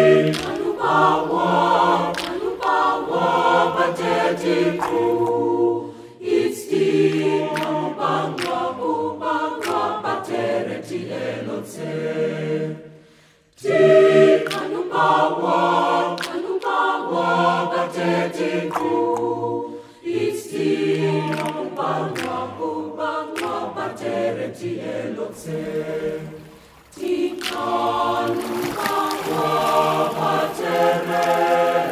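Youth choir singing a Damara/Nama song a cappella, several voices together in phrases, with a brief break about halfway through. Sharp clicks punctuate the singing.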